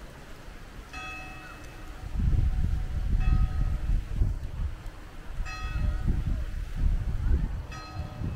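Church bell tolling slowly, four strokes about two and a half seconds apart, each ringing out and fading. Under it, from about two seconds in, runs a louder, irregular low rumble.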